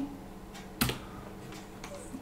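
A computer keyboard key struck once, a sharp click a little under a second in, with a fainter tick near the end, over faint room tone.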